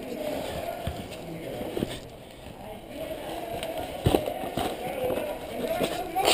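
Footsteps and gear rustle of an airsoft player advancing along a wall over rubble, with a few short knocks and faint voices in the background.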